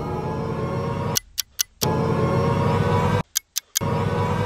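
Sustained background music that drops out twice, each time leaving a quick run of about four sharp clock-like ticks in half a second, a ticking effect like a time bomb.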